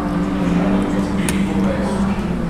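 A man humming a long, steady "mmm" through a mouthful of pasta, savouring the food, with a light click about midway.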